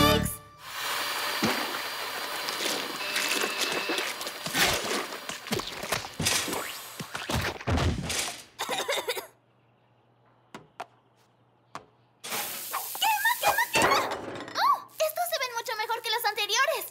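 Cartoon slapstick kitchen sound effects: an electric stand mixer running amid clattering, splattering and thunks of a baking mess. After a few seconds of near silence comes a hissing burst, then a short wordless vocal sound near the end.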